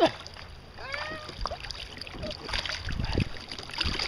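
Wind buffeting the microphone and water lapping against a kayak as the camera is handled, with dull low bumps in the second half. A short high-pitched call sounds about a second in.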